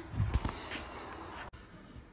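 Low rumbling thuds and a faint hiss on the microphone, the sound of a handheld camera being moved. It cuts off abruptly about one and a half seconds in.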